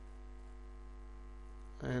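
Steady low electrical hum, mains hum picked up by the microphone, in a pause between words. A man's voice comes back in near the end.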